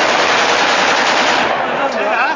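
A long burst of celebratory automatic gunfire: rapid shots running together in a continuous, loud crackle that thins out about a second and a half in.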